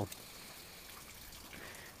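Faint, steady trickle and drip of meltwater running off a roof as the snow on it melts.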